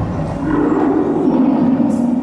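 A deep, sustained roar, the Beast's roar played over the theatre's sound system, starting a moment in and held until near the end.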